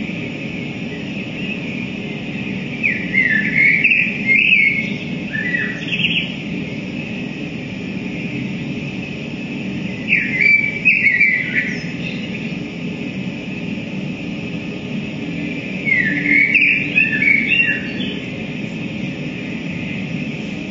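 Amplified electronic or tape performance through guitar amplifiers: three bursts of short, bird-like chirping glides over a steady hiss and low hum.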